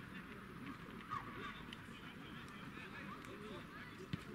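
Faint shouts and calls of players across a football pitch, one louder call about a second in.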